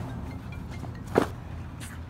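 Outdoor gear being handled: one short, sharp knock about a second in, over a steady low hum.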